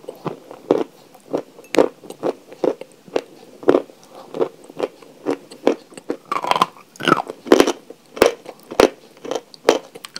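A person chewing soft chalk close to the microphone, with a steady run of crisp crunches about twice a second.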